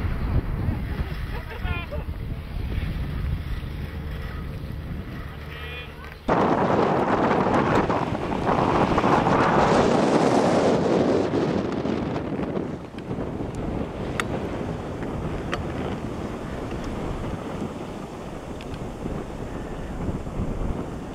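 Wind buffeting the microphone, a rough low rumble. About six seconds in it jumps suddenly to a loud rushing hiss that swells and dies away over the next six seconds, then settles back to a steadier, quieter wind noise.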